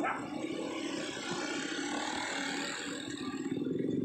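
Steady street noise, mostly a car engine running.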